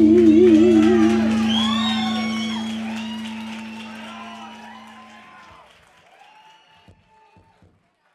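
The last held note of a live song, wavering with vibrato, stops about a second in while a lower note holds on to about five seconds; over it the audience whoops and cheers. Everything fades out to silence just before the end.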